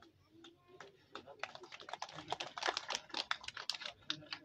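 Scattered hand clapping from a small seated audience, picking up about a second in and thinning out near the end.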